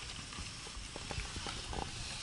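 Several light, irregular taps and knocks over a faint steady hiss.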